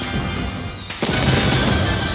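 Slot-game intro music with firework sound effects: a falling whistle, then a sudden bang about a second in, after which the music carries on louder.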